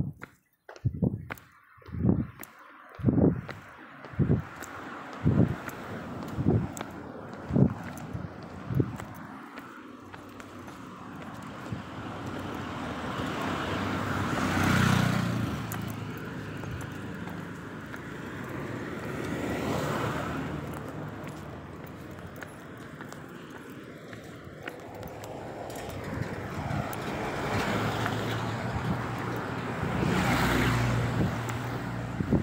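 About nine dull thumps at roughly one a second, then a steady rushing noise of road traffic that swells and fades as vehicles pass, three times.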